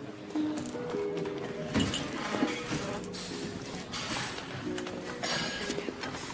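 Harp music playing, a slow run of held, plucked notes.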